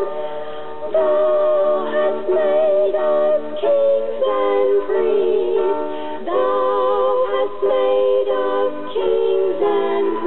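Female voices singing a gospel hymn together in harmony, sustaining notes with vibrato and moving to a new chord about every second.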